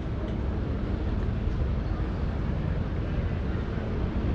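Steady low rumbling noise of wind buffeting the microphone, with no distinct events.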